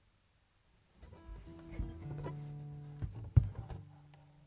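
Acoustic guitar being picked up and swung into playing position: after about a second of near silence, its open strings ring out as they are brushed, with several knocks against the body, the loudest a little past three seconds in.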